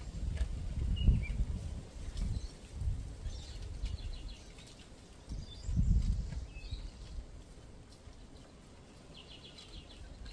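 Outdoor ambience: irregular low rumbles of wind buffeting the microphone, loudest about a second in and again around six seconds, with faint high bird chirps and twittering now and then.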